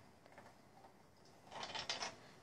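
Near silence: room tone, with a faint short rustle or scrape in the last half second.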